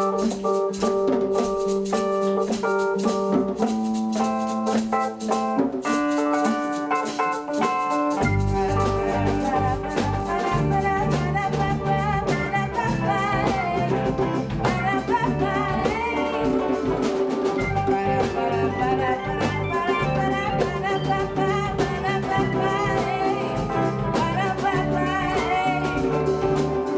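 Live band music: held keyboard chords alone at first, then about eight seconds in the bass and drums come in and the full band plays on with a singer.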